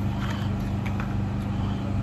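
A steady low mechanical hum, with a few faint clicks of small plastic parts being handled about a second in.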